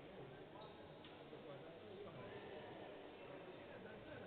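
Faint voices talking at a distance across a large, nearly empty hall, at a level close to silence.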